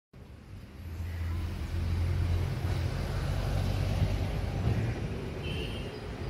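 A motor vehicle's engine passing: a low hum that swells in the first second and eases off after about five seconds.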